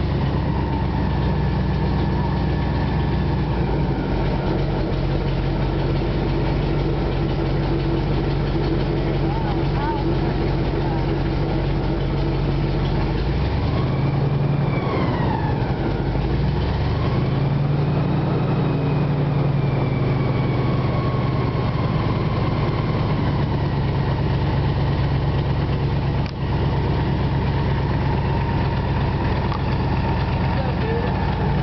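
Airboat's engine and rear air propeller running steadily at cruising speed. The engine note drops about 13 seconds in and climbs back a few seconds later as the throttle is eased and opened again.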